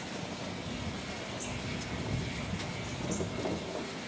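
Distant train passing: a low, steady rumble.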